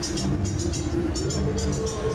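Electronic dance music played loud through a stage sound system: a steady bass pulse, quick hi-hat ticks and a synth tone slowly rising in pitch.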